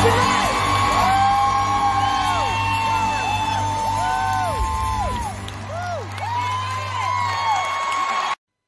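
Close of a live concert recording: the band holds a final chord while the audience whoops and cheers, with many short rising-and-falling whoops; the chord fades away near the end.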